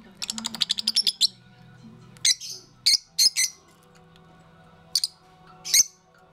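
Rosy-faced lovebirds chirping: a fast run of high chirps lasting about a second, then single sharp chirps spaced a second or so apart.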